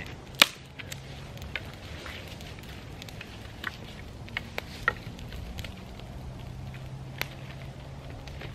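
Small twig-and-stick campfire crackling, with a handful of sharp pops and snaps scattered through; the loudest comes about half a second in.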